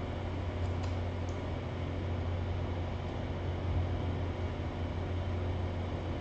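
Steady low hum with an even hiss: background room noise, with no other clear sound.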